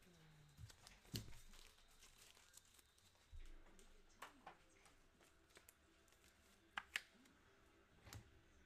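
Near silence, broken by faint rustles and scattered light clicks of trading cards and pack wrappers being handled, with two sharper clicks close together near the end.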